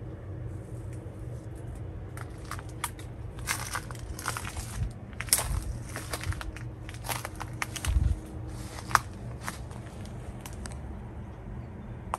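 Irregular crunching and crackling of dry leaves and twigs underfoot, scattered over several seconds, over a low steady rumble.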